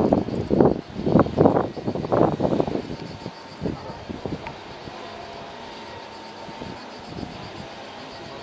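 Voices of people talking indistinctly close by for about the first three seconds, then a quieter steady outdoor background with a few faint, brief sounds.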